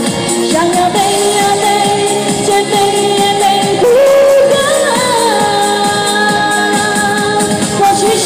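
A woman singing a pop song live into a microphone over amplified backing music, holding long notes; her voice steps up in pitch about four seconds in.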